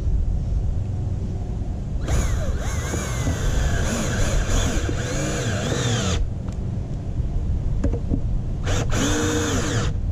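Porter-Cable cordless drill/driver driving screws into a pool skimmer's plastic faceplate, its motor whine rising and falling in pitch with the trigger: one run of about four seconds starting two seconds in, and a short burst of about a second near the end, over a steady low rumble.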